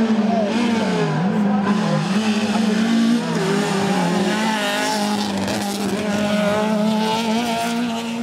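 Rally car engine running hard at high revs, its pitch dropping and climbing back twice in the first couple of seconds as the driver lifts off and changes gear, then holding a more even pitch.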